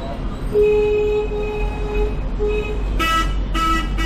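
Vehicle horns honking in street traffic: a steady, lower horn sounds in broken stretches for about two seconds, then a brighter, louder horn gives two short blasts near the end, over the low rumble of traffic.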